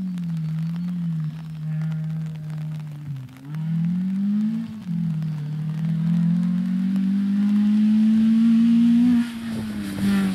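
Rally car engine at hard throttle on a stage, approaching: the note climbs and drops back sharply several times as it changes gear, growing louder as the car nears, with a sudden drop shortly before the end as it lifts off.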